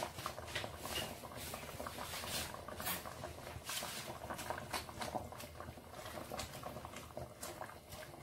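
Beef sinigang simmering in a stainless steel pot, with irregular small popping and crackling throughout, while a spoon stirs the broth and pak choi.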